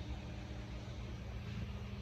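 Steady low hum with a faint even hiss: background room noise such as ventilation, with no distinct events.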